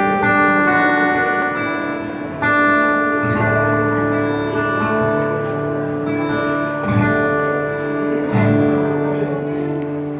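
Acoustic guitar playing a slow song intro: chords strummed and left to ring, with new chords struck about two and a half, seven and eight and a half seconds in.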